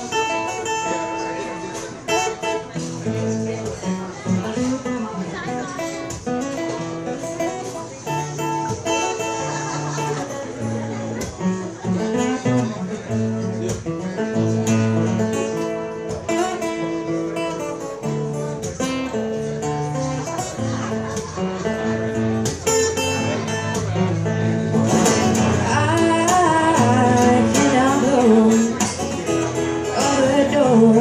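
Live acoustic guitar playing the opening of a song, a steady run of chords. A voice comes in over the last few seconds.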